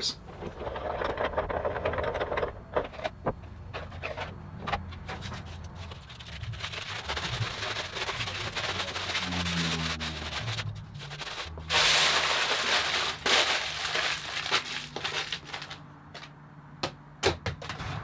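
Aluminium foil being crumpled and peeled off heat-bent elm guitar binding strips: crinkling and rustling throughout, loudest about twelve seconds in.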